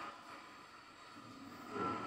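Quiet room tone: a faint steady hiss with a thin high hum, and a soft brief rise in sound near the end.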